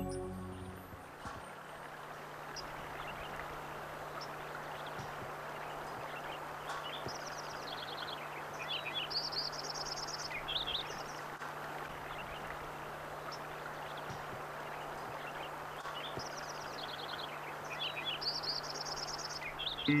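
Outdoor nature ambience: a steady soft hiss with a songbird singing, twice giving a similar phrase of chirps that ends in a fast high trill, about seven and sixteen seconds in.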